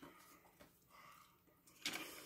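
Near silence: room tone, with a brief soft sound just before the end.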